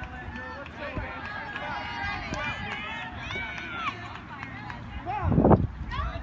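Overlapping voices of spectators and players chattering and calling out across a ball field, with a louder, closer voice about five seconds in.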